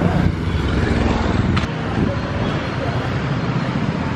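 Street traffic: the steady rumble of motorcycle and car engines, with a sharp click about one and a half seconds in.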